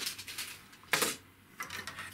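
Clicks and knocks of feeder rod parts and a plastic quivertip tube being handled and set down on a table, the loudest knock about a second in.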